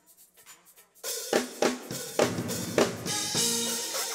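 A church band starts up about a second in: a drum kit plays four heavy hits with cymbal crashes, then organ chords come in and are held.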